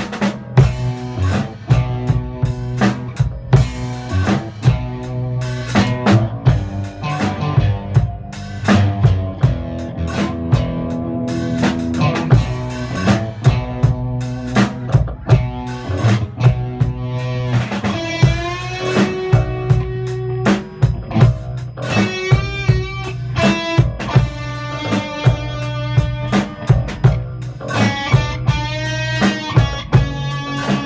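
A band playing an instrumental passage: drums keep a steady beat under electric bass and electric guitar. A little past halfway the electric guitar takes a lead line of wavering, bent notes, which returns near the end.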